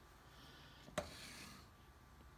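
A single short click about a second in, with faint rubbing, as a hand handles the RC helicopter's frame and ESC wiring; otherwise near silence.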